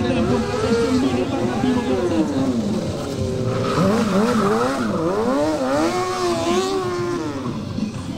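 Stunt motorcycle's engine revving up and down in repeated throttle blips while the rider holds a wheelie.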